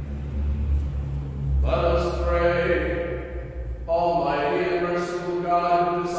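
A single voice chanting a liturgical text in long held notes. It starts about a second and a half in and breaks briefly near four seconds. A low rumble runs underneath before the chanting begins.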